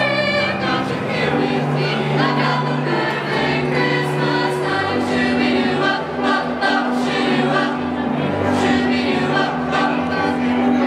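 A choir singing with instrumental accompaniment, in long held chords.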